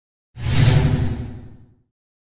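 Whoosh sound effect with a low rumble underneath, coming in suddenly about a third of a second in and fading away over about a second and a half, marking the transition to the end screen.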